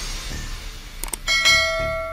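Two quick clicks about a second in, then a bright bell-like chime that rings out and slowly fades: the notification-bell sound effect of an end-screen subscribe animation.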